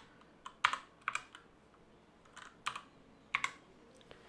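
Computer keyboard keystrokes: a slow, uneven series of single key presses, about eight clicks, as a short six-character code is typed in one key at a time.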